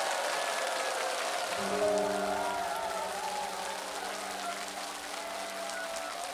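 Audience applauding over the instrumental introduction of a song, with sustained low notes entering about a second and a half in.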